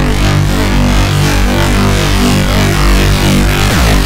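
Moog Model 15 modular synthesizer playing a loud, dense, steady low drone with layered pads, with a pitch sweep near the end.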